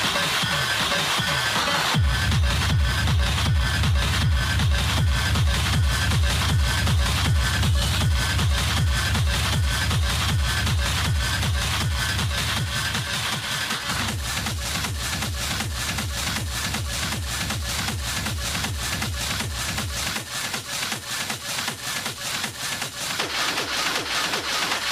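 Schranz-style hard techno DJ mix: a fast, pounding, evenly spaced kick drum under a heavy bass line. The bass drops out for a few seconds near the end, then the full beat returns.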